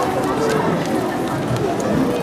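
Audience chatter: many voices talking at once in a crowded hall.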